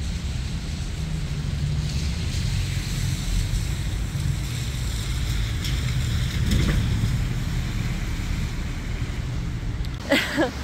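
Wind buffeting the microphone: a steady low rumble, with a brief louder noise about six and a half seconds in.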